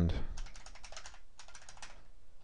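Computer keyboard being typed on: a quick run of about a dozen keystrokes, with a brief pause partway through, as a single word is entered.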